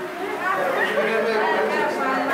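Speech: several voices talking at once, overlapping chatter.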